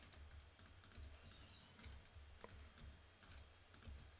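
Near silence with a few faint, scattered clicks from a computer mouse and keyboard being used for editing.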